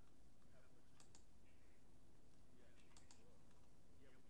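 Faint clicks of computer keys, two quick pairs about two seconds apart, over near-silent room tone.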